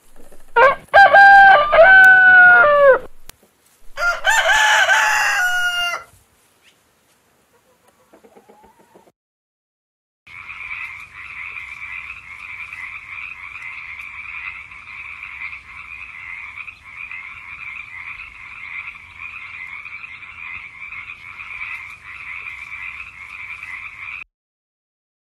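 A rooster crows twice in the first six seconds, loud, with long drawn-out notes. After a few seconds' pause, from about ten seconds in, a frog calls in a steady, unbroken stretch, much quieter than the crows.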